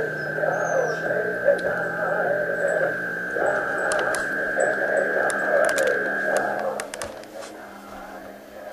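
Radio receiver tuned near 660 kHz, giving a steady high whistle over a wavering, chant-like sound. The whistle cuts off about seven seconds in, with a few clicks, and the sound then drops away.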